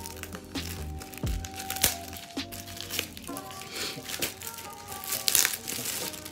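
Packaging crinkling and rustling in bursts as a wig cap is unwrapped, over steady background music.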